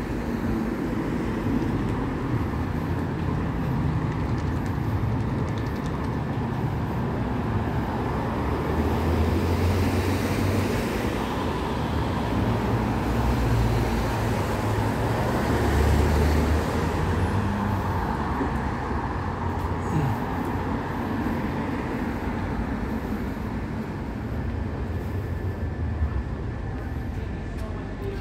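Road traffic on a city street: a steady rumble and hiss of passing cars that swells through the middle stretch and eases off again toward the end.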